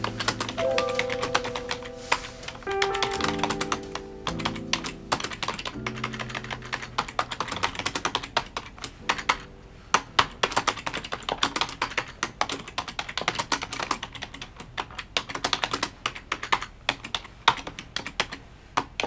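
Typing on a computer keyboard: a fast, irregular run of key clicks with short pauses. Soft background music plays under it for roughly the first half, then fades out.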